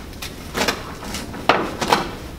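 A bassinet's fabric liner being handled and its Velcro strips pressed into place around the inside: a series of short rustling scrapes, about five in two seconds, the loudest about one and a half seconds in.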